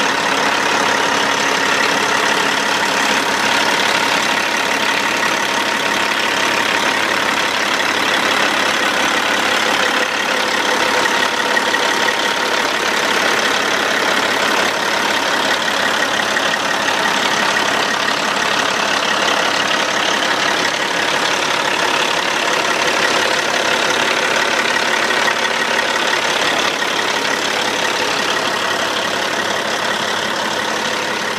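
Caterpillar 475-horsepower diesel truck engine idling steadily, heard close up.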